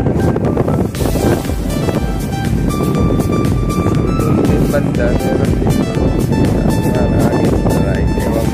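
Background music with a steady beat and a melody line, including a long held note in the middle.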